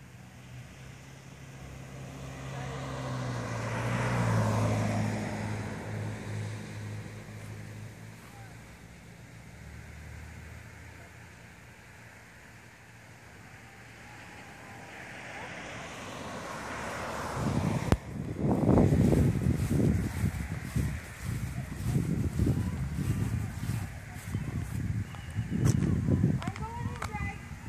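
A car passes on the road, its engine and tyre noise swelling to a peak about four seconds in and then fading; fainter traffic swells follow. In the last eight seconds there is louder, uneven rumbling with a few sharp knocks.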